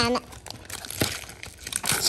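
Foil Pokémon booster pack wrapper crinkling and tearing as it is opened: a run of small irregular crackles with one sharper snap about a second in.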